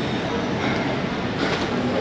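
Steady road noise from riding on a motorbike through city traffic: engine, tyres and wind running together with no single standout event.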